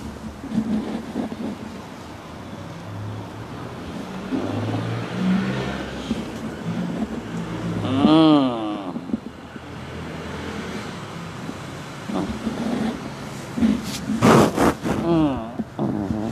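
A person's wordless voice rises and falls once about eight seconds in, then sounds again more loudly near the end among a few sharp clicks. A low, uneven hum runs underneath through the first half.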